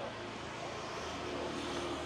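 A motorbike engine running, a little louder near the end.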